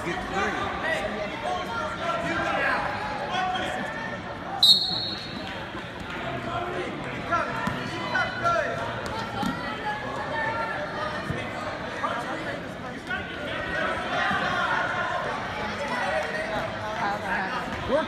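Many spectators' voices shouting and calling out at once in a gymnasium, with a short shrill referee's whistle blast about four and a half seconds in, and a few dull thuds on the mat.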